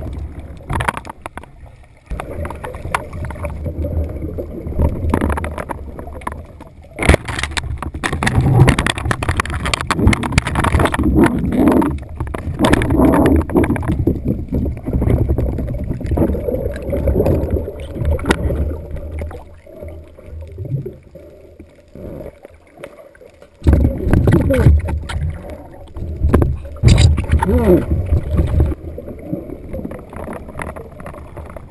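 Muffled underwater sound picked up by a camera in its waterproof housing: a churning, low rush of water, loud and uneven, with a few sharp knocks.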